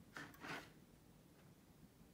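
Two brief rustles a fraction of a second apart, in the first half-second, against near silence.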